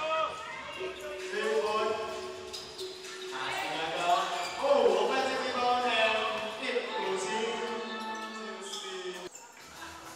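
Indoor gym sound: voices calling and chanting over a basketball bouncing on the hardwood court.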